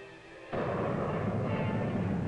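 Nike rocket booster firing at launch. It starts suddenly about half a second in and goes on as a loud, steady rushing noise.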